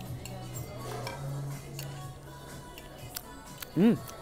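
A few light clinks of cutlery on a plate over soft background music. A short hummed "mm" comes right at the end.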